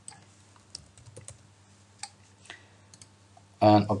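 Faint, irregular taps of a computer keyboard, a handful of single keystrokes spread over about three seconds as a password is typed, with a click or two among them.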